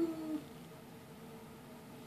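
A baby's long, steady-pitched whining cry that ends less than half a second in, followed by quiet room tone.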